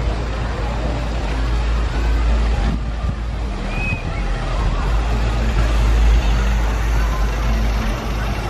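Outdoor amusement-park ambience: distant voices and crowd chatter over a steady deep rumble.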